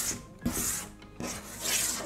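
Chalk scraping across a chalkboard in several long strokes, each a few tenths of a second, as the lines of a musical staff are drawn.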